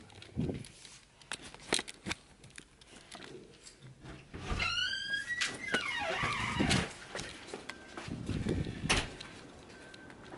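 Clicks, knocks and rustling of close handling as the dog is led out through a door, with a short rising squeal about halfway through and a sharp knock near the end.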